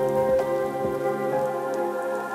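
Future garage electronic music: sustained synth pad chords over a rain-like crackling texture. The low bass drops out about halfway through, leaving a sparse breakdown.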